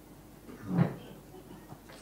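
A pause in a man's speech into a microphone, with one brief, faint vocal sound a little under a second in.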